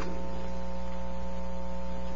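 Steady electrical mains hum: a constant low buzz with a few higher steady tones above it and a faint hiss.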